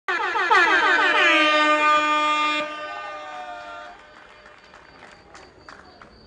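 Air horn blast: its pitch sweeps up several times in quick succession, then holds one steady note. It cuts off about two and a half seconds in, and an echo rings on until about four seconds in.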